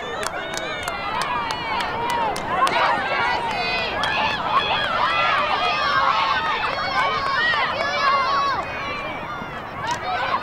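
Many high voices shouting and calling over one another at once, from girls' lacrosse players and sideline spectators, with a single sharp click near the end.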